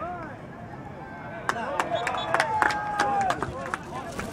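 Players and bench shouting during a beach handball game, with a run of sharp cracks about one and a half seconds in and one long held call near the middle.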